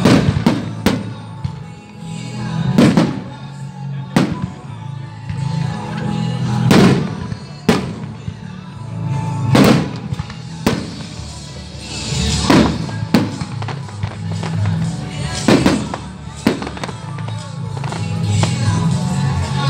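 Aerial firework shells bursting overhead, about a dozen sharp bangs spaced one to two seconds apart. Music plays steadily underneath throughout.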